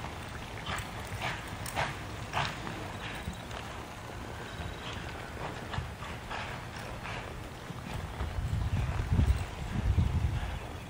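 Cutting horse's hooves striking the dirt arena floor as it moves with a cow, a few sharp hoofbeats about half a second apart in the first few seconds, then a louder low rumble near the end.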